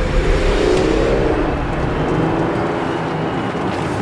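A car engine accelerating close by, a steady rush of engine and road noise.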